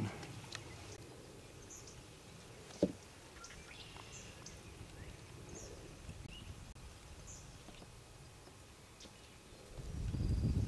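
Quiet outdoor ambience: a low steady rumble with faint, brief bird chirps scattered through it, and one sharp knock a little under three seconds in.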